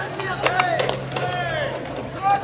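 Baseball players shouting long drawn-out calls to one another during infield fielding practice, with a few sharp knocks of the ball striking gloves.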